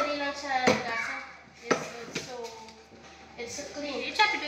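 Voices talking, with three sharp clatters of dishes being handled at a sink in the first half.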